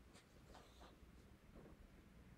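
Near silence, with a few faint, brief rustles and scrapes from hands handling items on an altar table.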